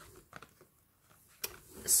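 Faint handling noise from a plastic blister pack held in the hands: a few soft clicks, then one sharper click about one and a half seconds in.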